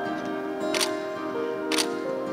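Live instrumental folk music from piano, acoustic guitar and violin, with long held notes. Two sharp clicks come about a second apart.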